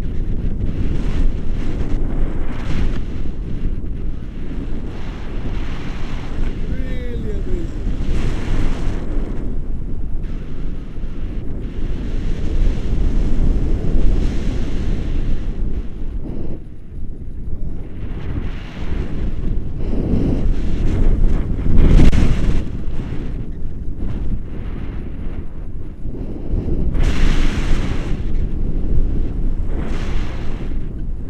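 Wind buffeting an action camera's microphone during a paraglider flight: a loud, rumbling rush of airflow that swells in gusts, strongest a little over two-thirds of the way through and again near the end.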